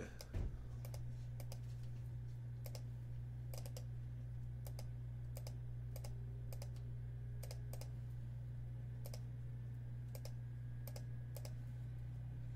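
Scattered, irregular clicks of a computer keyboard and mouse over a steady low electrical hum.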